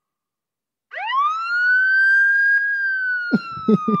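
Police siren sound effect: after about a second of silence, one wail that rises quickly, holds, then slowly falls in pitch.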